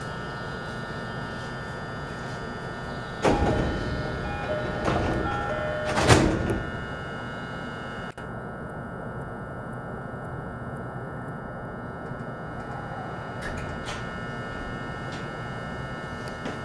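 Passenger doors of an E233-7000 series electric commuter car closing: a sudden rush of sound as they start, a short chime of tones, and a loud thud as they shut about six seconds in. The standing car's steady hum runs underneath.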